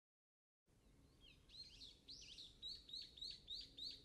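Songbirds chirping, faint, after a brief silence at the start. The short high chirps grow louder and settle into a quick even series of about three a second.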